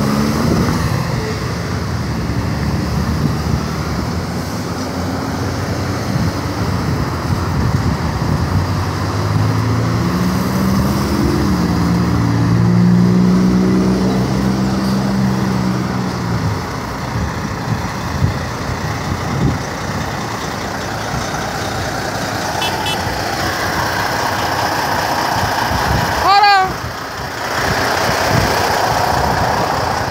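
Road traffic passing close by, with a semi-truck's diesel engine running as it goes past around the middle, its pitch climbing and then holding. Near the end comes one short, loud, pitched sound that bends up and down.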